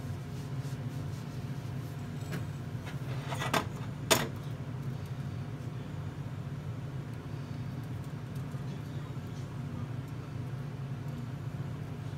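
A steady low hum, with two sharp clicks about three and a half and four seconds in, the second one louder.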